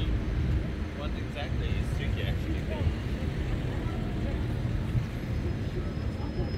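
Busy city street: a steady low rumble of traffic, with passers-by talking, most clearly a second or two in.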